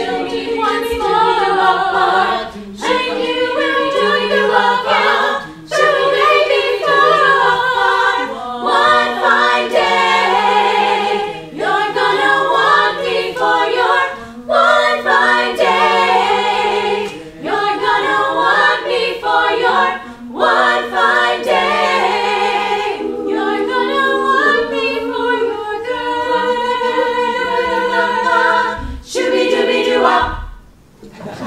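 Women's a cappella choir singing in harmony without accompaniment, a lower part holding steady notes under moving upper voices, with short breaks between phrases; the piece ends right at the close.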